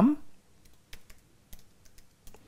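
Computer keyboard typing: a few separate, faint keystrokes.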